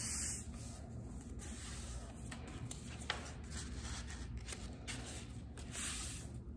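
Sheet of construction paper being folded and creased flat by hand on a table: soft, faint rustling and rubbing, with a light tap now and then.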